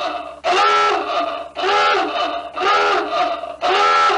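A short pitched sound effect repeated about once a second, each one rising then falling in pitch, played with the channel's end logo.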